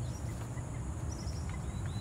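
Outdoor ambience: wind rumbling on the microphone, with a steady high hiss and a few faint bird chirps.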